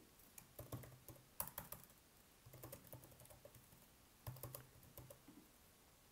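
Faint typing on a computer keyboard: a few short runs of key clicks as a line of text is typed, stopping about a second before the end.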